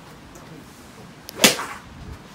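Golf club striking a ball: one sharp crack about one and a half seconds in, with a short ringing tail.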